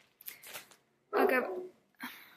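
A pet dog barking.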